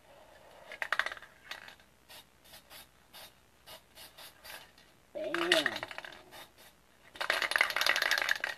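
Aerosol spray-paint can being shaken, the mixing ball inside clinking against the metal can: a short run of rattling, then light single clicks every third of a second or so, and a denser run of rattling near the end.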